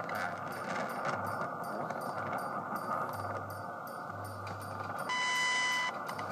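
Shortwave radio receiving the WWV atomic-clock time broadcast from Fort Collins: steady static and hiss with the once-a-second pulsing of the seconds, the signal weak under poor atmospheric conditions. About five seconds in, the high, steady minute tone sounds for just under a second, marking the 60-second mark.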